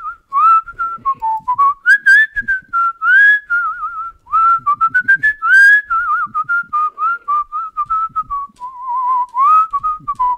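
A person whistling a tune by mouth: a single clear line of notes that slides between pitches, with quick trills on some notes.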